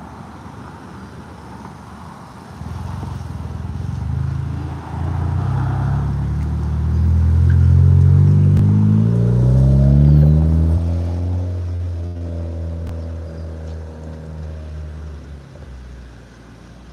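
A Honda Civic hatchback's engine revving as the car accelerates close past, the pitch climbing to its loudest and then falling away as it drives off.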